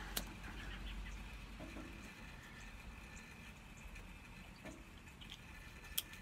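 Soft puffing and lip smacks of a man drawing on a corncob pipe as he lights it, with a few small clicks and a sharper click near the end.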